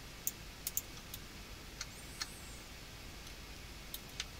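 A computer mouse clicking, about seven sharp single clicks at irregular intervals, over a faint steady hiss.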